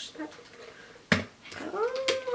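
A sharp plastic click about a second in as the water bottle's lid is worked, then a long meow that rises and falls in pitch near the end.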